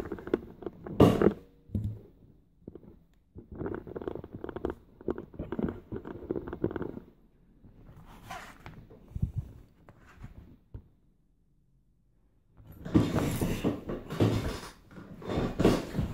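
Handling noise from hands at a workbench: a sharp knock about a second in, then stretches of rubbing and clatter, a short silence, and more rubbing near the end.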